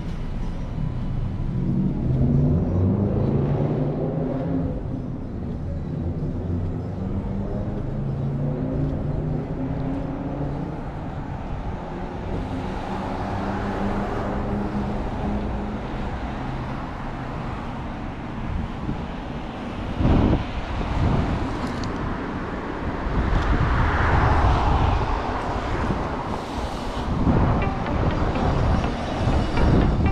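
Traffic on a town street: vehicles passing with a steady engine hum and tyre rush, loudest as cars go by about halfway through and again near the end. Low gusts of wind buffet the microphone now and then.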